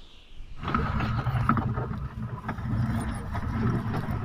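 A vehicle engine running steadily. It comes in suddenly about half a second in, after a faint hiss, and a few sharp clicks sound over it.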